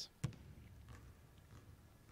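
Quiet gym room tone with one sharp knock about a quarter second in and a few faint taps after, as a basketball free throw comes down and the ball bounces on the hardwood floor.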